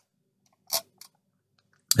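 Mostly quiet, with one brief soft noise about two-thirds of a second in and a couple of faint short clicks about a second in.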